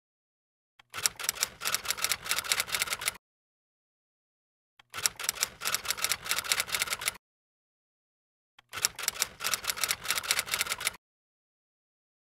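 Typewriter-style typing sound effect: three bursts of rapid key clicks, each about two seconds long, with short silent gaps between them.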